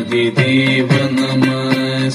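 Indian devotional music: a long held chanted note over a few sharp percussion strokes.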